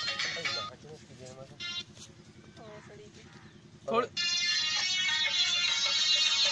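Been (snake charmer's pipe) music: a reedy, buzzing tune breaks off less than a second in, leaving a quieter stretch with faint voices, then comes back loud just after a knock about four seconds in.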